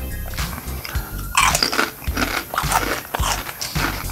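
Potato chips being bitten and chewed: a run of dry, sharp crunches, loudest about a second and a half in. Music plays underneath.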